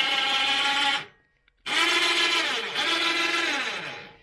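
Electric winch motor, worked from a pendant remote, raising and lowering the saw head of a homemade band sawmill. It runs with a steady whine, stops about a second in, then starts again half a second later and runs until shortly before the end.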